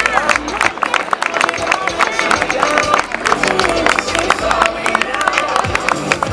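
Crowd clapping in dense, irregular applause over music, with voices mixed in.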